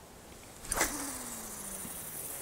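A spinning rod swished through a cast, then braided line hissing steadily off the spinning reel's spool as the bombarda float flies out. A faint hum under the hiss falls slowly in pitch.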